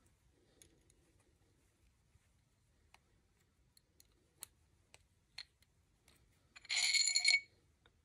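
Small metallic clicks and taps as a steel AR barrel and its aluminium-and-steel dimple jig are handled, then a brief metallic ringing rattle about seven seconds in.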